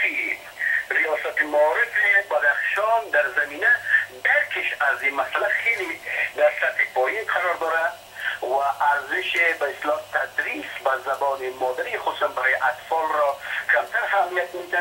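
Speech only: a voice talking continuously, with short pauses, sounding thin and narrow as over a telephone line, over a faint steady low hum.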